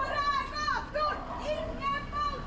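High-pitched children's voices calling out in a string of drawn-out calls whose pitch bends up and down.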